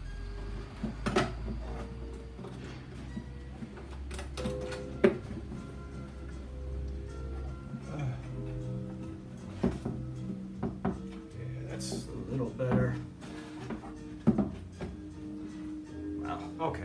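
Background music with sustained notes, over a handful of sharp wooden knocks and clicks from luthier's wooden clamps being handled and re-tightened on a cello body, the loudest about five seconds in.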